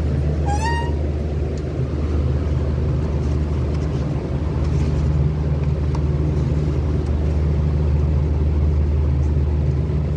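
Steady low hum of supermarket dairy-cooler refrigeration, loud and even throughout. A short rising squeak sounds about half a second in.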